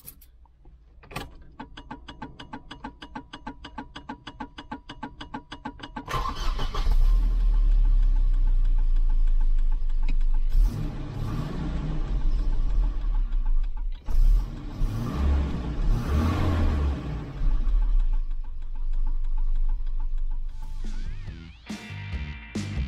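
1988 Volvo 240 engine being started: the starter cranks with an even rhythm for about five seconds, then the engine catches and runs loudly, rising and falling a few times as it is revved.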